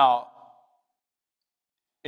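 A man's voice says a drawn-out "Now," falling in pitch, then dead silence for about a second and a half.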